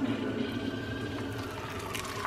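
Water poured from a kettle into a saucepan of cut potatoes, a steady splashing fill.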